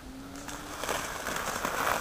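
Rustling and crackling of a plastic sack and dry leaf litter as the sack is turned over on the forest floor, louder over the second half.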